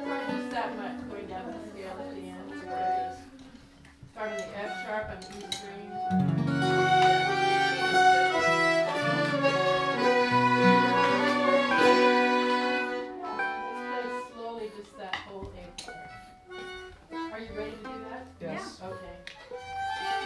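Fiddles playing a waltz tune in a folk jam, with a fuller accompaniment of sustained low notes joining about six seconds in; the playing thins out after about thirteen seconds.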